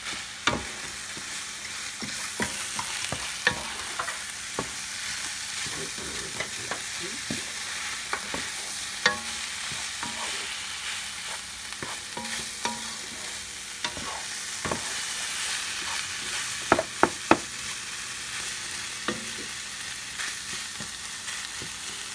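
Ground turkey frying in a pan with a steady sizzle while a wooden spoon stirs and scrapes through the meat, knocking against the pan now and then. Three sharp knocks come in quick succession about three-quarters of the way in.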